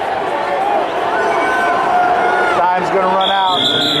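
Spectators shouting and calling out over one another at a youth wrestling match. About three seconds in comes a high, steady whistle blast about a second long, near the end of the period.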